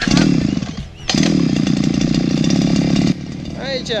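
Small brush cutter engine being started: it fires briefly, falls away about a second in, then runs steadily for about two seconds and cuts off suddenly.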